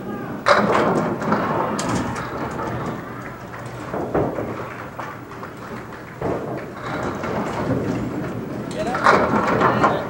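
Candlepin bowling: a ball strikes the candlepins with a sudden clatter about half a second in, followed by a steady rumble of balls rolling on the lanes. A second crash of pins comes near the end.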